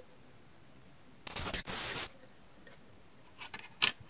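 Quiet handling noises: a rustle lasting about a second near the middle, then a few light clicks near the end, as a white-gloved hand handles the multimeter's metal LCD frame.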